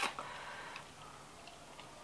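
A few faint, irregular light ticks and clicks as fingers work through a plant's roots and loose substrate in a plastic tub.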